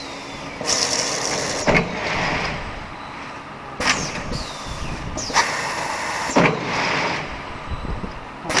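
Balloon printing machine running, with repeated bursts of compressed-air hiss lasting about a second each. Sharp clacks mark where the bursts start and stop, and a few brief falling squeaks come through. The hissing falls silent for a couple of seconds in the middle, then returns as three bursts in quick succession.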